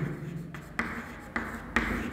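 Chalk writing on a chalkboard: several short scratching strokes in quick succession.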